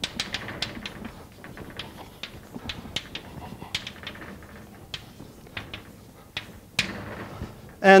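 Chalk writing on a blackboard: a quick, irregular series of sharp taps and light scrapes as the chalk strikes and drags across the slate. A man's voice starts speaking near the end.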